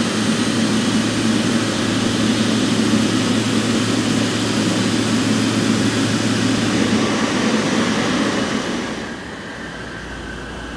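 Jet engines of a Boeing 777 airliner running steadily at low power as it taxis in to the stand, a loud whining rush with a low hum. The noise falls away about nine seconds in.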